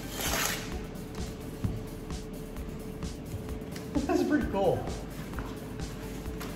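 A paper mailing envelope being torn and rustled open, the tearing loudest in the first half second, then softer paper handling. Quiet background music runs underneath, and a short voice sound comes about four seconds in.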